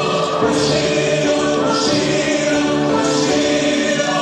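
Mixed vocal quartet of two men and two women singing a Christian song in harmony through handheld microphones, holding long notes.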